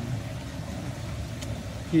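A steady low background rumble, with a faint tick about one and a half seconds in.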